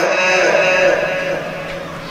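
A male Quran reciter's voice, in Egyptian tajweed style, holding the closing note of a phrase, which fades out over the first second or so.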